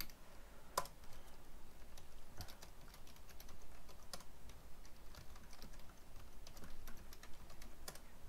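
Typing on a computer keyboard: irregular keystrokes clicking.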